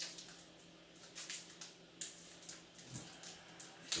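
Foil wrapper of a Magic: The Gathering booster pack crinkling and tearing as it is opened by hand: a string of short, irregular rustles and crackles.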